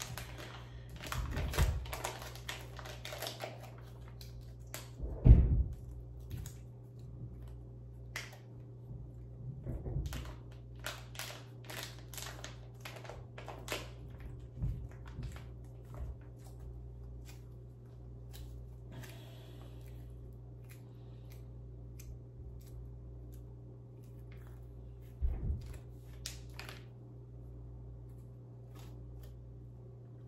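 Crinkling and clicking of a small packet being handled in the hands, with a dull thump about five seconds in and another about five seconds before the end, over a steady low hum.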